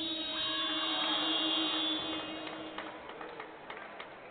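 Basketball arena's end-of-period horn sounding as the game clock runs out at the end of the half. It is a steady horn that starts suddenly, lasts about two seconds and then fades, followed by scattered short knocks from the court.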